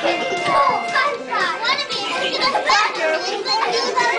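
Many young children's voices at once, chattering and calling out over each other.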